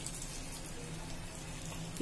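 Sweet corn vadas deep-frying in hot oil: a steady, even sizzle and crackle, with a faint low hum under it.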